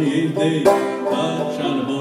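Open-back banjo strummed as a steady folk-song accompaniment, with one sharper, louder strum about two-thirds of a second in.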